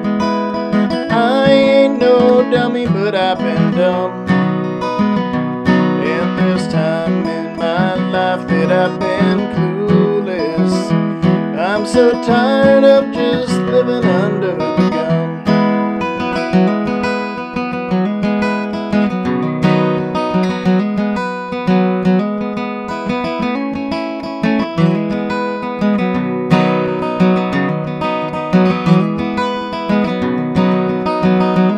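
Steel-string acoustic guitar played solo: a continuous instrumental passage of picked notes and strums.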